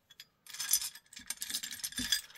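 Two ten-sided dice rattling: a rapid run of small clicks that begins about half a second in.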